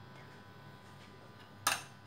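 A plastic tub set down on a wooden board: one sharp knock near the end, over a faint steady hum.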